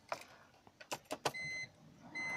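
A few sharp clicks and knocks as the key is turned in the ignition of a 2003 BMW 325i (E46), then one short high electronic beep about a second and a half in.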